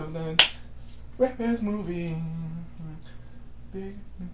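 A single sharp finger snap, then a voice singing a short phrase that ends on a held note.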